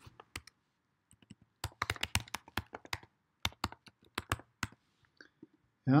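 Typing on a computer keyboard: two quick runs of keystrokes, the first beginning about a second and a half in and the second ending a little before five seconds.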